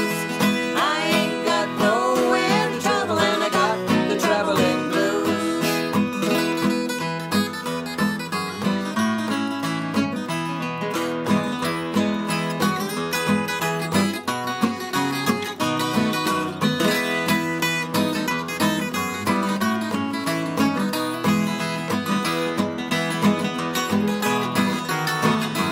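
Two acoustic guitars playing an instrumental break of an old-time duet song, a busy run of picked notes over a steady rhythm, with no singing.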